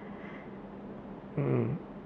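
A short, low hum from a man, a closed-mouth "mm" as he thinks before answering, near the end of an otherwise quiet pause with room tone.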